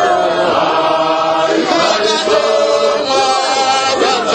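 A group of voices chanting a hymn together, with some notes held steady.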